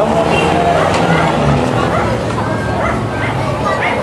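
A crowd of children chattering and calling out over one another, with short high yelping calls among the voices.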